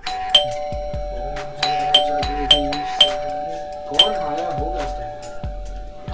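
Doorbell rung over and over, about five sharp chiming strikes in quick succession: someone at the door ringing again and again to be let in.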